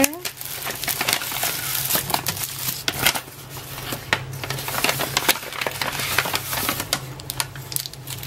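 Paper wrapping crinkling and rustling as it is unfolded by hand, with frequent small clicks and taps as the contents are handled.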